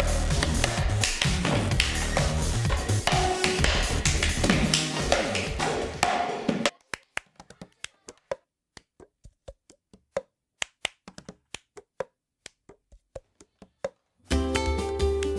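Music with a heavy bass beat stops abruptly about seven seconds in. After that, plastic cups are knocked and slapped on a hard surface alone in a cup-song rhythm: sharp, separate taps with silence between.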